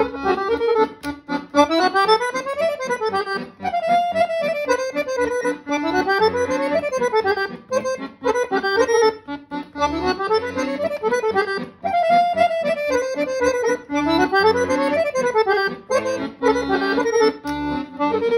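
Guerrini chromatic button accordion playing a Serbian kolo: a melody of quick runs that climb and fall back, the phrase coming round about every four seconds.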